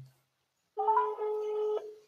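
A phone's outgoing-call tone: one steady electronic tone about a second long, starting about three-quarters of a second in, as a call is placed.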